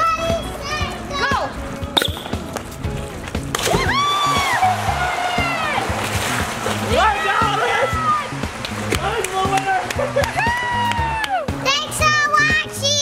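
Background music with a steady beat and singing, over a person jumping into a swimming pool, with a splash and churning water partway through.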